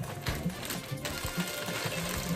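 Plastic packaging rustling as it is handled and opened, with music playing in the background.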